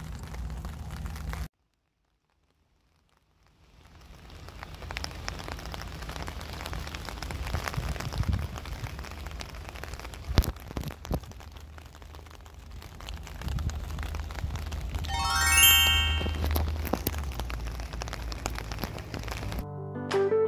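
Rain with wind rumbling on the microphone, after a couple of seconds of complete silence. About fifteen seconds in, a quick rising run of chime-like tones sounds over it.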